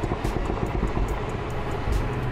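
Audi car's engine and exhaust heard from inside the cabin while driving in sport mode, with a rapid, rough crackle from the exhaust.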